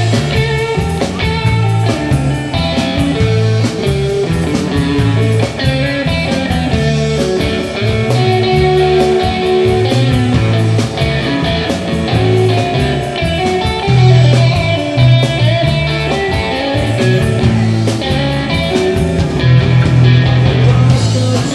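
Live electric blues band playing an instrumental passage: electric guitar to the fore over electric bass and a drum kit, in a steady beat.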